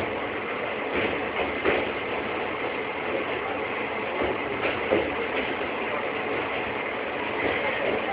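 Passenger train running, heard from aboard a carriage: a steady rumble and rattle of wheels and coach, with a few sharp clanks.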